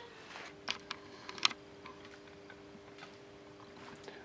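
A few light clicks and taps of small metal parts being handled on a wooden workbench, the sharpest about three-quarters of a second and a second and a half in, over a faint steady hum.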